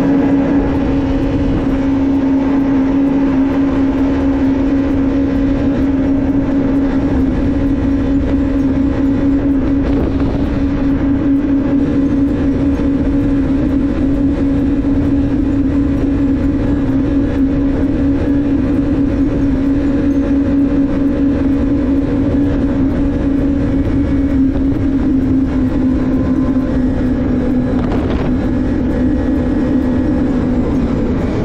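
Personal watercraft engine running at a steady cruising speed: one constant, even drone that eases slightly in pitch near the end.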